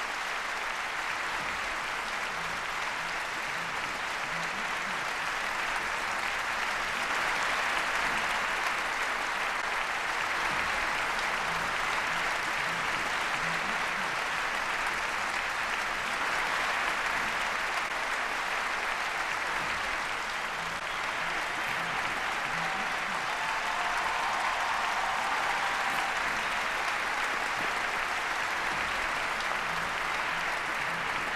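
A large audience applauding steadily throughout.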